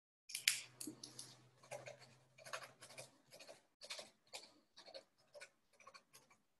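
Faint, irregular clicking and scratching picked up over a video-call microphone, with a low steady hum under the first three seconds or so.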